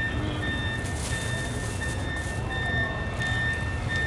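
An electronic warning beeper sounding one high beep over and over, about one and a half beeps a second, like a vehicle's reversing alarm, over a steady low rumble of street noise.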